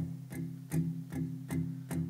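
Acoustic guitars playing a country song without vocals, strummed in a steady rhythm of about two and a half strokes a second.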